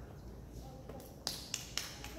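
Three sharp clicks close together in the second half, as sheet music is handled on a grand piano's music rack.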